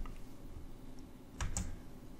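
Quiet room tone with a faint click at the start and one short click-like sound about one and a half seconds in.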